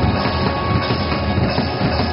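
Live funk band playing loud: drum kit, electric bass and electric guitar together in a steady groove.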